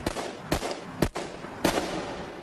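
Four revolver gunshots about half a second apart, each followed by a short echo, the third the loudest.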